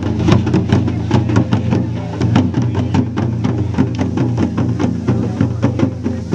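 Folk drums playing a fast, steady rhythm of sharp, clicking strokes, about five a second, over a steady low-pitched hum or drone, as dance music.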